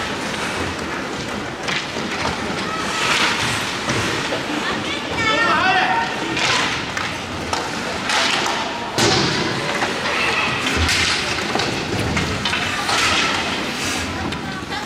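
Ice hockey play in an echoing indoor rink. Skate blades scrape the ice in repeated hissing strokes, with stick and puck clatter and a sharp knock about nine seconds in. Indistinct shouts from players or onlookers carry over the top.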